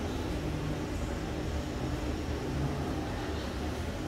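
Steady low background hum of building ventilation and equipment noise, with no distinct events.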